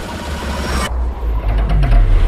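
Action-film trailer soundtrack: music over a deep, steady low rumble with car engine noise during a night chase; the noisy upper layer drops away suddenly about a second in.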